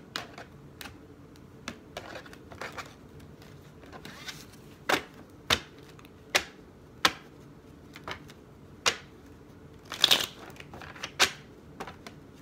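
A miniature tarot deck being shuffled by hand: irregular sharp card snaps and taps, with a denser, louder flurry about ten seconds in.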